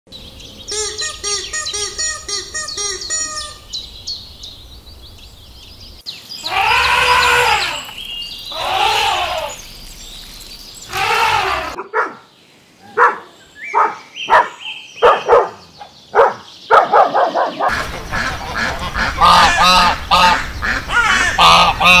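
A string of separate animal clips. Rapid repeated chirping calls come first, then three long calls that rise and fall, then short crackling strokes of a dog chewing a plastic bottle, and near the end ducks quacking.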